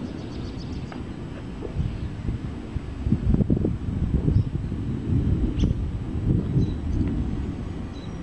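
Thunder from an approaching thunderstorm: a low, rolling rumble that swells about three seconds in and rumbles on for several seconds before easing near the end.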